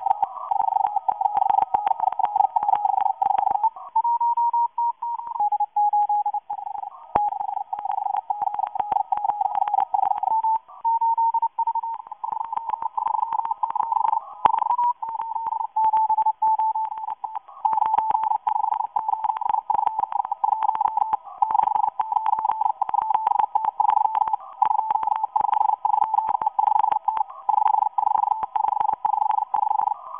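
Morse code from a Russian agent transmitter heard on a shortwave receiver: a fast-keyed tone around 800 Hz to 1 kHz that never pauses, with a fainter steady tone just above it. The keyed tone steps a little higher or lower in pitch a few times.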